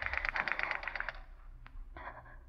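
Radio-drama sound effect of a telephone being dialled: a rapid run of clicks lasting about a second, then two single clicks near the end.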